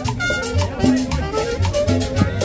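Live Latin dance band playing an upbeat salsa-style tune, with a steady repeating bass line, percussion and pitched instrument lines.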